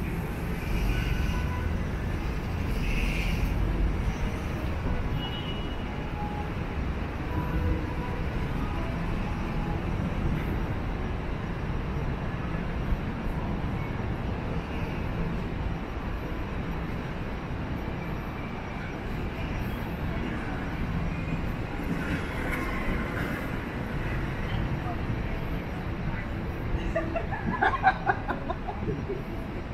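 City street ambience: a steady rumble of traffic with snatches of passers-by talking, one voice closer near the end.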